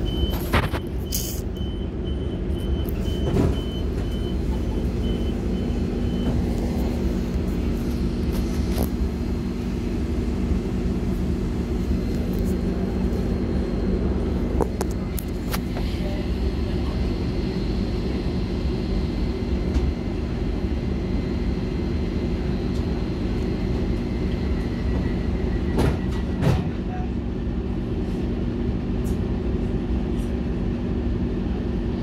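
A train running at a station platform: a steady low rumble with a constant hum, broken by a few sharp clicks and knocks. A repeated high beep sounds over the first few seconds.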